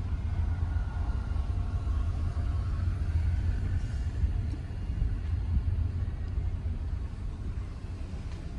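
Steady low rumble of a car heard from inside the cabin as it idles and creeps forward at low speed.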